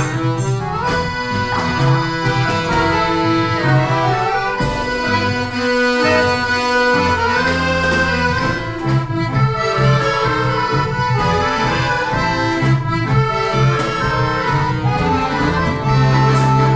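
An accordion orchestra playing a tune in held chords over a bass line.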